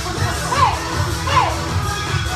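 Two short high shouts, each falling in pitch, about a second apart, from people in a fitness kickboxing class, over workout music with a steady thumping beat.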